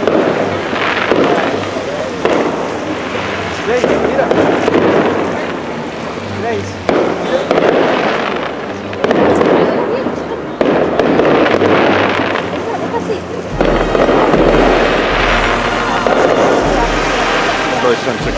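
Aerial fireworks bursting in a steady series, a sudden bang about every couple of seconds, each followed by a noisy, crackling decay.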